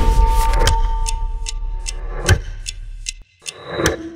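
Mechanical watch ticking, about two and a half ticks a second, over a low music drone that cuts off about three seconds in.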